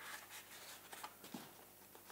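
Faint light scrapes and taps of corrugated cardboard being handled, pressed down onto a cardboard strip and lifted.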